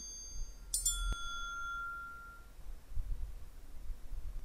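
A homemade electromagnetic bell: the hammer head strikes a metal tumbler used as the bell, which rings with a bright metallic tone and dies away over about a second and a half. The ring of an earlier strike is fading at the start, and the new strike comes just under a second in, followed shortly by a sharp click.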